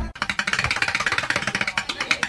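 Fast drumming with drumsticks on upturned plastic paint buckets: a rapid, even run of sharp strokes.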